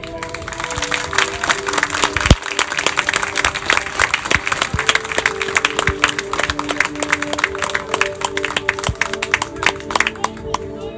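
Audience clapping and applauding, starting about half a second in, over background music with a simple melody of held notes.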